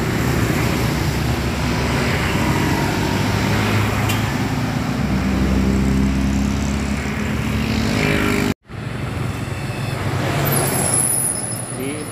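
Road traffic passing: motorcycles, cars and a bus running by, with a low engine drone that swells over a few seconds. The sound cuts out abruptly for a moment about two-thirds of the way through, then the traffic noise resumes.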